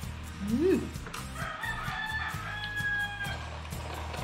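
A rooster crowing, one long call lasting about two seconds, starting about a second in, over background music.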